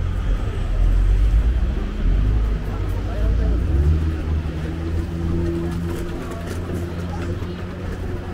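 City street ambience: a low traffic rumble, with a steady engine hum setting in about halfway through, under passers-by talking.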